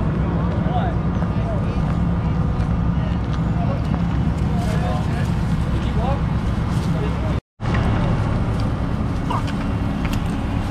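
A LAV-25 light armored vehicle's diesel engine idling steadily close by, a continuous low hum, with indistinct voices over it. The sound breaks off for an instant about seven and a half seconds in.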